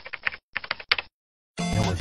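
Keyboard-typing sound effect: a quick run of key clicks for about a second, then a short gap before music comes in near the end.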